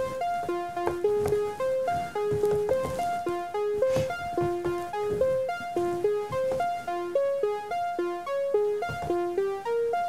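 Pure Data software synthesizer playing a looping four-note arpeggio, about four notes a second. The tone is a filtered sawtooth with a short attack-release envelope. The pitches in the pattern change partway through as new notes are played in from a pad controller.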